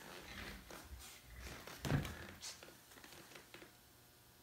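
Faint rustling and handling noises of a person shifting position and moving the plastic spreader around a leather car seat, with a soft thump about two seconds in.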